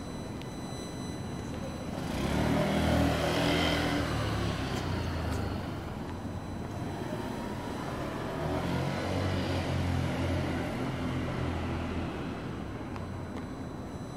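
Street ambience with two motor vehicles driving past close by. The first swells up about two seconds in and fades by about five seconds; the second passes between about eight and twelve seconds in.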